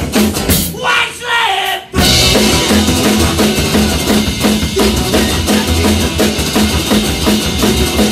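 A live rock band with electric and acoustic guitars and a drum kit playing. About half a second in, the band thins out into a short break with sliding notes, then crashes back in together at about two seconds and plays on at full level.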